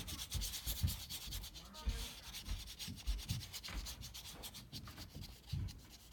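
Paintbrush rubbing on watercolor paper in quick scratchy strokes, densest in the first two seconds, with soft low thumps scattered throughout.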